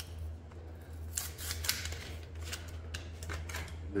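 Packaging of a new set of brake pads being opened by hand: a run of short crackling clicks, heaviest from about a second in and again in the second half, over a steady low hum.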